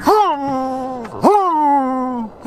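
A man's voice moaning through cupped hands: two long wailing notes, each jumping up in pitch and then sliding slowly down, the second starting just over a second in. It is a mouth imitation of an electric car's pedestrian warning sound.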